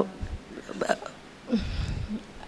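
A woman's non-word vocal sounds close to a handheld microphone between words: a short catch of breath, then a falling hesitant 'uh' about one and a half seconds in, with low thumps on the microphone.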